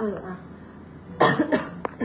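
A woman coughs once, sharply, a little over a second in, followed by a short click.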